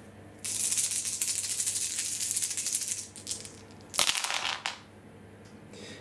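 A handful of nine six-sided dice rattled together for about two and a half seconds, then thrown and clattering briefly onto the tabletop about four seconds in.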